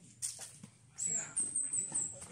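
High-pitched bird chirping: one falling note, then three or four quick chirps, starting about a second in. A short sharp knock comes just after the start.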